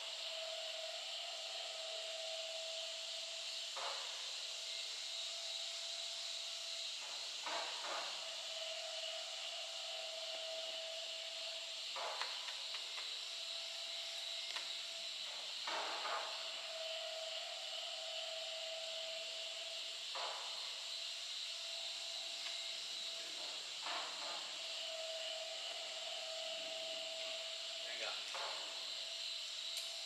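A climber's short, sharp exhales, about one every four seconds, over a steady high hiss with a faint hum beneath it. A call of 'go' comes about four seconds in.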